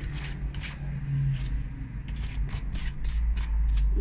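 Hands handling paper craft pieces: thin tissue paper rustling and being pulled away, with irregular light clicks and scrapes against paper boxes, over a low steady hum.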